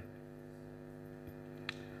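Steady electrical hum with one faint click near the end.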